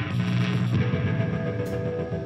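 Rock band playing live: electric guitars and bass hold a chord that changes about three-quarters of a second in, with drums underneath.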